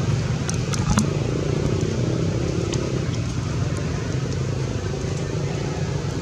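Steady outdoor background rumble, heaviest in the low end, with a few faint clicks about half a second to a second in.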